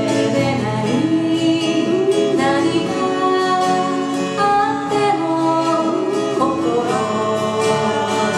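Two acoustic guitars strummed while a woman and a man sing a Japanese folk song together, with sustained, gliding vocal lines.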